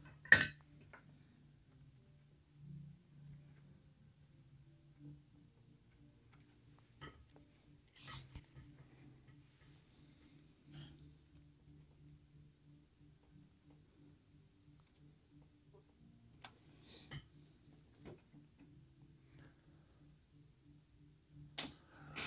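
Soldering work in a vintage tube-amp chassis: a few light, sharp clicks and taps of tools against the metal chassis and jacks, spaced several seconds apart, the loudest just at the start, over a faint steady low hum.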